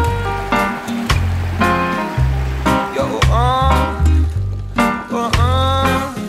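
Background music with a steady beat and a bass line, with a few notes sliding up in pitch.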